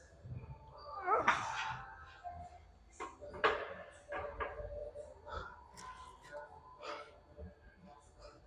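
A man's strained groan with a rising pitch about a second in, at the effort of a heavy barbell back squat. It is followed by a sharp knock about three and a half seconds in and several lighter knocks and clanks as the loaded barbell is handled back toward the rack.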